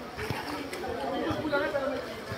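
Indistinct chatter of voices in the background, with no clear words.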